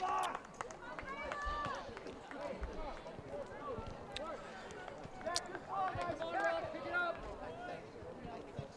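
Faint, distant voices of soccer players and spectators calling out across the field, with two sharp clicks about four and five and a half seconds in.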